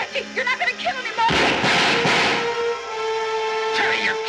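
Film soundtrack: raised voices, then a sudden loud noisy burst lasting about a second, a bit over a second in, then a held musical chord.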